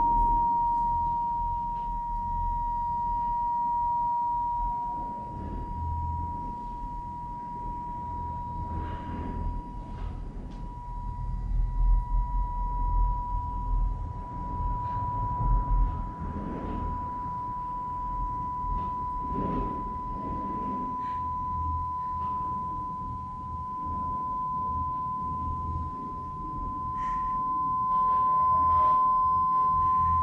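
A single pure electronic sine tone near 1 kHz held steadily, its pitch creeping very slowly upward, over a low rumble with a few soft knocks, loudest about midway.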